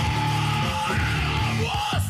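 Heavy metal song: a full band with distorted guitars, bass and drums, with a yelled vocal over it.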